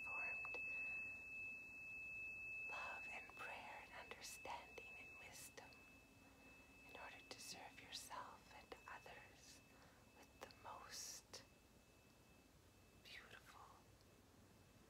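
A tuning fork rings with one high, steady tone that slowly dies away and ends about ten seconds in, under soft whispers.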